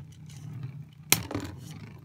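Two Beyblade spinning tops whirring steadily on the floor of a plastic stadium, with a sharp clack about a second in as they knock together.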